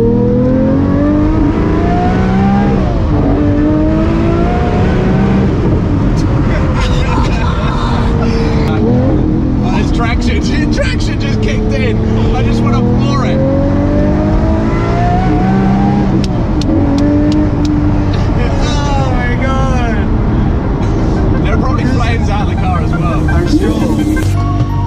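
Mid-engined supercar's engine heard from inside the cabin, revving hard in several long rising sweeps, the pitch dropping back sharply between them as it shifts gear, with laughter over it in the middle.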